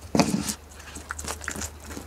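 A goat biting into and chewing ripe jackfruit flesh close to the microphone. There is one loud wet crunch just after the start, then smaller irregular crunching and clicking.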